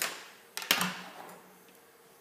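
Handheld gas lighter being clicked: a sharp click, then a second about two-thirds of a second later followed by a fading hiss as it lights.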